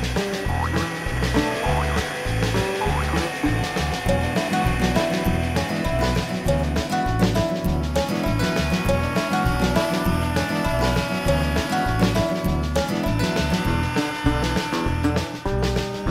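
Background music with a steady, pulsing bass beat and held melody notes.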